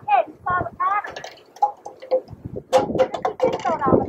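Indistinct talking in a high-pitched voice, with a few sharp clicks about three quarters of the way through.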